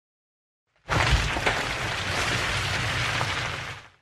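Intro sound effect: a sudden burst of dense noise with a deep low end and a couple of sharp hits near the start. It holds for about three seconds and fades out near the end.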